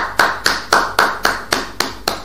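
One man clapping his hands in a steady rhythm, about four claps a second, applauding in praise of the word of God.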